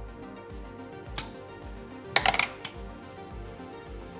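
Brass cartridge cases clinking through a hand-cranked Rollsizer Mini case roller as they are fed one at a time: a single metallic clink about a second in, then a quick cluster of clinks around the middle. Background music with a steady beat plays throughout.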